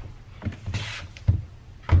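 A laptop being handled and closed on a desk: a few short, low knocks and thumps, the loudest near the end, with a brief rustle or scrape about a second in.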